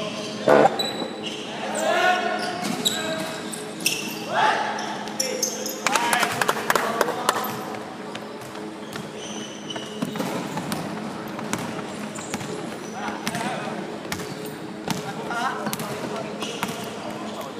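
Basketball game in a reverberant sports hall: the ball bouncing on the wooden court, players' sneakers squeaking and players shouting to each other, most of the shouts in the first half. A steady low hum runs underneath.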